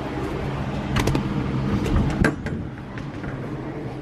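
A few sharp clicks of a front door's lever handle and latch as the door is opened, over a steady low hum.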